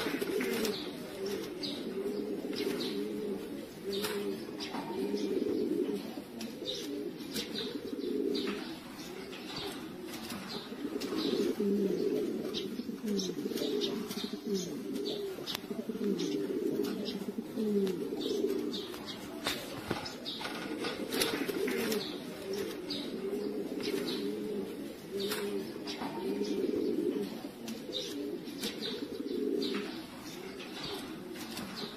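A flock of domestic pigeons cooing continuously, many voices overlapping, with scattered short sharp clicks.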